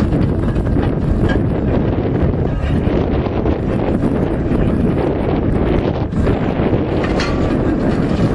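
Steady wind buffeting on the microphone, over a steam traction engine hauling a trailer of logs at a slow pace.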